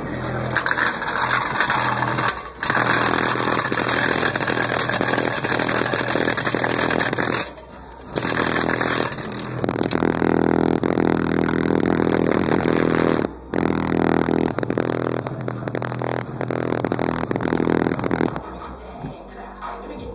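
APXX12 subwoofer in a ported box playing bass-heavy music very loud, heavily distorted on the phone's microphone, cutting out briefly a few times.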